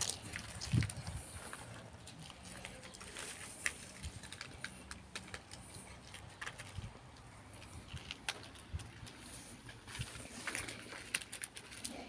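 A cat eating dry kibble, with faint crunches scattered irregularly.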